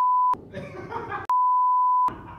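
Two censor bleeps: a steady, single high beep tone laid over the speech to blank out words. The first ends about a third of a second in; the second starts a little past halfway and runs on. Faint voices are heard in the gap between them.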